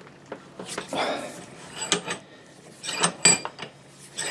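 Cast-iron bench vise being worked to crush plastic strimmer line flat, giving several sharp metallic clinks with a short ringing tail, spread over the last couple of seconds.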